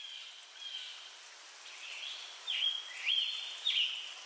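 Soft outdoor hiss with a series of high, thin whistling tones that swoop up and down, growing clearer in the second half.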